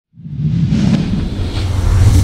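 Intro logo sting: a deep bass rumble that starts abruptly and swells, with a whoosh over it.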